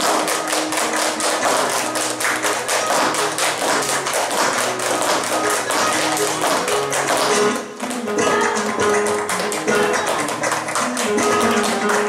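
Flamenco bulería played on guitar under a dense run of sharp percussive claps and taps, handclaps (palmas) and dance footwork keeping the rhythm. The playing briefly breaks off a little before the eight-second mark, then carries on.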